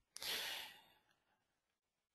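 A man's short breath out, a sigh into a close microphone, lasting about half a second near the start.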